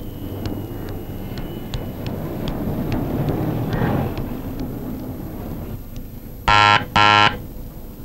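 Electric doorbell buzzer rung twice: two short, loud buzzes about half a second apart, near the end. Before them there is a low street rumble.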